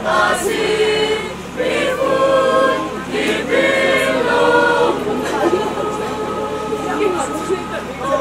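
Mixed choir of young men and women singing together in parts, with sustained notes held through the second half.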